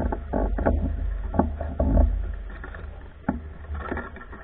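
Low wind rumble on a bike-mounted camera's microphone, with a few irregular knocks and clicks scattered through it.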